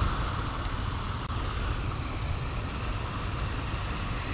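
Steady outdoor background noise, an even rushing hiss with no distinct events.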